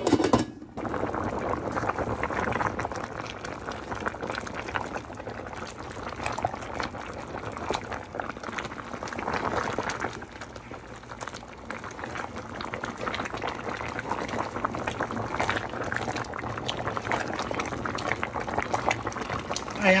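Pot of soup boiling on the stove: a steady bubbling with many small pops. A brief knock at the very start.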